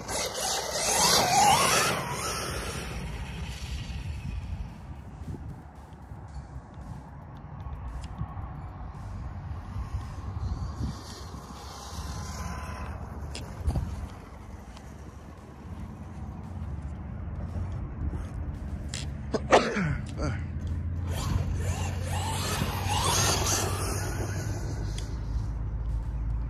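Electric motor of a Losi Super Rock Rey 2.0 RC truck whining and rising in pitch as it accelerates across grass, in three bursts: at the start, around the middle and again near the end. A sharp knock comes just before the last burst.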